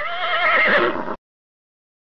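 A horse whinnying once, about a second long, its pitch quavering up and down, cutting off abruptly.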